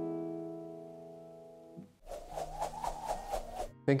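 A chord on a nylon-string classical guitar rings out and fades away over about two seconds. Then comes a short burst of fast, evenly pulsing sound, lasting under two seconds.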